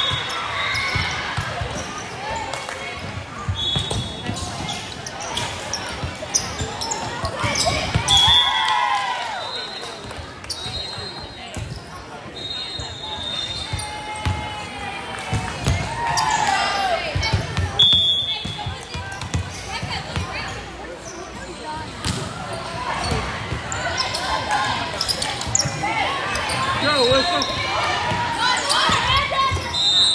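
Indoor volleyball game in a large, echoing gym: the ball is struck repeatedly, short high squeaks come and go, and players and spectators shout and call throughout.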